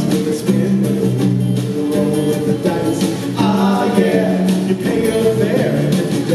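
A live rock band playing a mid-tempo song: strummed guitars and banjo ukulele over drums and keyboards, with voices singing over the band.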